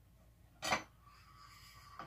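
Hatsan Flash air rifle barrel being slid out of its steel block: a sharp metallic click, then a faint, even rubbing as the barrel stem and its O-rings slide out, and a light click near the end.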